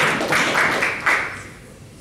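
Audience applauding, dying away about a second and a half in.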